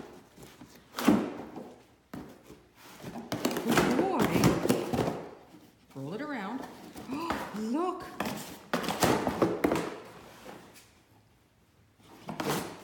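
A Great Dane pawing at and biting a small cardboard shipping box, knocking it about: a run of thuds and cardboard knocks, the sharpest about a second in and a cluster around nine seconds.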